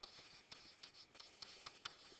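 Faint taps and short scratching strokes of a stylus writing on a tablet surface.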